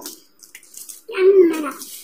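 A woman's voice making one short wordless vocal sound, with a wavering pitch, about a second in.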